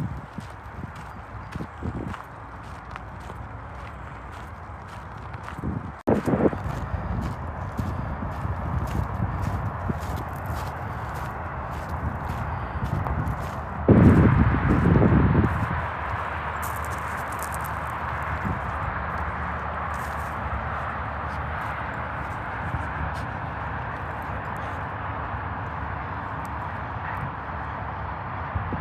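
Footsteps crunching on a gravel path, with a quick run of small clicks and scuffs. About halfway through comes a short, loud low rumble, and after it a steady hiss of distant highway traffic.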